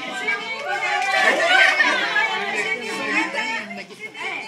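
Several children and adults chattering at once, overlapping voices that grow louder and higher-pitched about a second in, then ease off.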